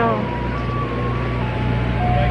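Steady low engine hum from idling food trucks parked along the curb, with a few sustained tones that step down in pitch over it.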